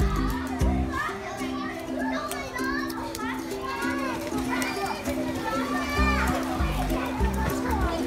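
Background music with a steady beat of repeating low notes, its bass dropping out about a second in and returning about six seconds in, under young children's high voices calling and chattering.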